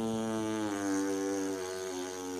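A long, drawn-out comic fart noise held on one droning pitch that sags slowly. It is the 'lament' kind of fart that the surrounding poem describes.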